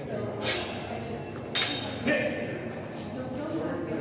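Longsword blades clashing in sparring: two sharp, loud strikes about a second apart, each ringing briefly, then a lighter clink just after two seconds in.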